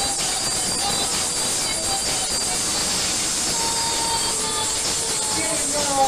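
Playback music under a loud, steady wash of club crowd noise, with a few held sung notes standing out.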